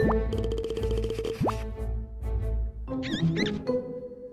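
Playful children's-show title jingle with cartoon sound effects: a quick upward swoop at the start and another about a second and a half in, then a wobbling, warbling effect near the end.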